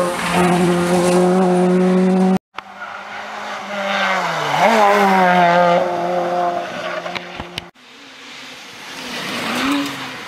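Rally cars' engines at high revs through a tight bend, three cars in turn, the sound cutting off suddenly between them. In the middle pass the engine note dips and climbs again as the driver lifts and re-accelerates; the last car's engine rises in pitch near the end.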